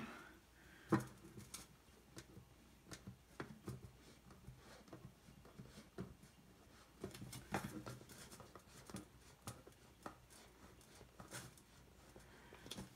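Faint scattered clicks and light handling noises as hands fit and tighten an air-line fitting and nut in a grommet on a metal paint can lid, with a sharper click about a second in.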